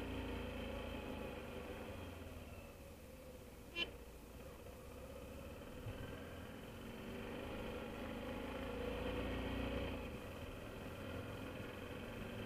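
BMW F650GS Dakar's single-cylinder engine on the road, easing off through a turn and then pulling away again, its revs building until about ten seconds in and then dropping back. A brief sharp chirp about four seconds in.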